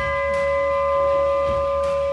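Large brass ship's bell, struck once by its lanyard just before, ringing on in one long steady tone made of several pitches.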